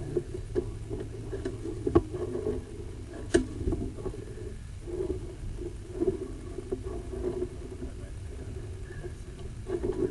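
Sewer inspection camera's push cable being fed down a drain line: irregular knocks and scraping over a low rumble, with the sharpest knocks about two and three and a half seconds in.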